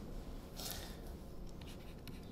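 Faint scratching and light ticks of a stylus writing on a tablet screen, with one brief scratchy stroke a little over half a second in.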